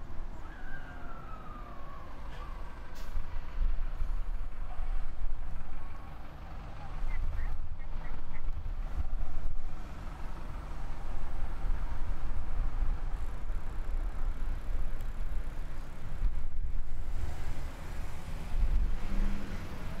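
Road traffic at a street intersection: vehicle engines running, with a low rumble that swells and fades as vehicles move past, and a falling tone near the start.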